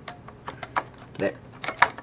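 Irregular small plastic and metal clicks and taps as an AirPort card is worked into its slot under the rails inside an iBook G3 clamshell laptop. The card is a tight fit, and the loudest click comes near the end.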